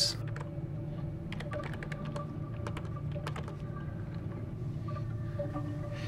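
Typing on a computer keyboard: quick, irregular runs of key clicks over a steady low hum. The clicks thin out after about three and a half seconds.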